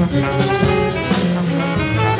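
Free jazz from a small ensemble: several horns, trombone among them, playing overlapping lines over drums and cymbals.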